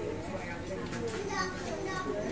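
Indistinct background chatter of several people talking at once, children's voices among them.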